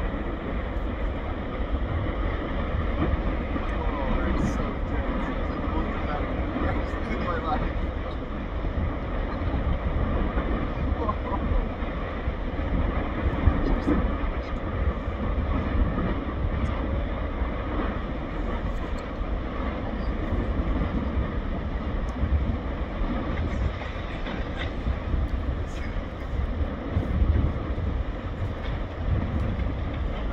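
Continuous deep rumbling roar of an erupting volcanic crater throwing up lava fountains, with faint scattered crackles.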